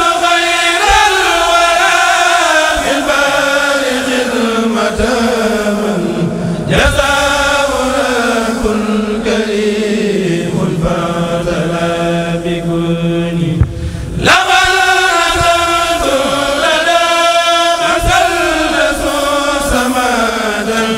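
Male voices of a Mouride kourel chanting a khassida without instruments. They sing three long drawn-out phrases, each sliding slowly down in pitch, with short breaks about 7 and 14 seconds in.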